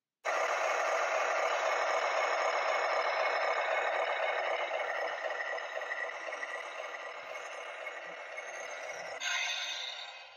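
Dubbed-in vehicle sound effect for a toy truck driving away: a steady, noisy rattling sound that starts abruptly and slowly fades, changing sound near the end.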